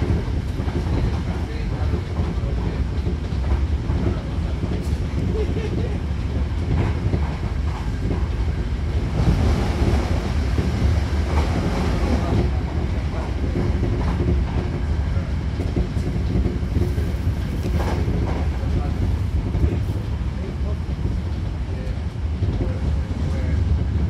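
Interior running noise of a Hankyu Kobe Line electric train car under way: a steady low rumble of wheels on rail, with scattered knocks from rail joints. A louder rushing stretch comes about halfway through.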